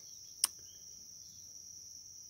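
Insects, likely crickets, chirring steadily in one high-pitched band, with a single sharp click about half a second in.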